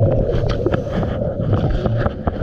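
Scuba regulator exhaust bubbles heard underwater: a dense, gurgling rush of bubbling with many small crackles and clicks, starting suddenly.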